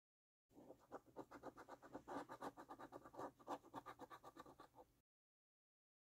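A coin scratching the latex coating off a paper scratch card in quick back-and-forth strokes, about eight to ten a second. It starts about half a second in and cuts off suddenly near the end.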